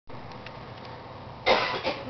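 A person coughs twice, about one and a half seconds in, the first cough longer and louder than the second, over a steady low room hiss.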